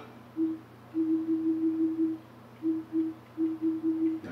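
Apple TV menu navigation sounds from the TV: short low beeps at one pitch, one per step as the purchased-programmes list scrolls. They come in quick runs of up to about six a second, separated by short pauses.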